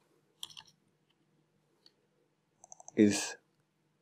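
Computer keyboard keys clicking in short clusters, about half a second in and again just before a spoken word near the end, as lines are entered in a code editor.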